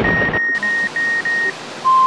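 Electronic sound-effect beeps of a mock loading screen: a high beep repeated about three to four times a second over a steady hiss of static while loading runs, then a single steady lower beep near the end as loading completes.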